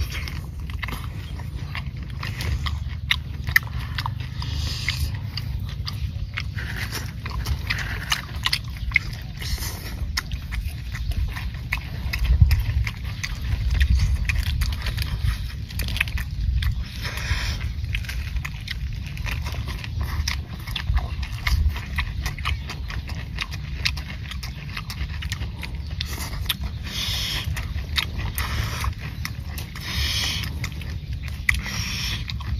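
Close chewing and crunching of raw shrimp and raw cabbage leaves by two people: a dense, irregular run of crisp crunches and small wet clicks, with several louder crunches.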